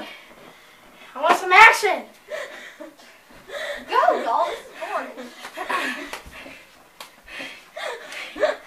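Children laughing and exclaiming in bursts during rough-and-tumble play, with one sharp smack near the end.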